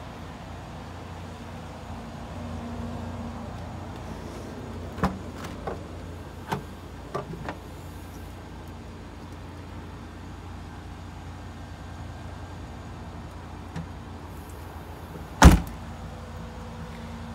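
2015 Nissan Pathfinder idling steadily, with a few sharp clicks about five to seven seconds in as the rear liftgate latch releases and the gate opens. Just before the end, a single loud thud as the liftgate is shut.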